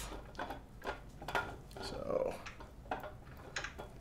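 A steel camshaft being pushed and twisted through the cam bearings of a small-block Chevy 350 block: faint, irregular light metallic clicks and clinks as it works its way in.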